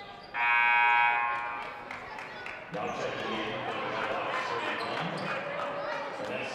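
Gym scoreboard horn sounding once, a loud steady buzz of under a second that rings on in the hall, signalling a substitution. Indistinct voices of people in the gym follow.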